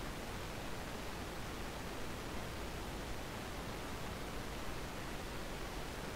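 Steady, even hiss of a microphone's background noise, with no distinct events.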